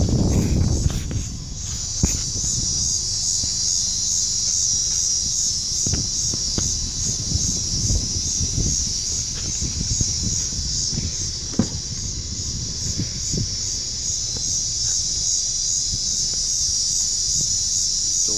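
A steady, high-pitched chorus of insects at dusk, with low handling noise and a few short knocks underneath.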